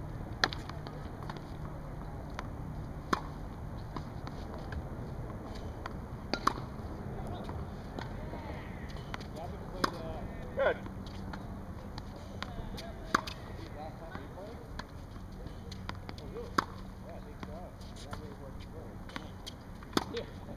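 Tennis ball struck with a racket on forehand drives, a sharp single pop about every three seconds, six or seven shots in all.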